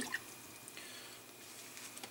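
Quiet room tone: faint hiss, with a brief soft tick just after the start.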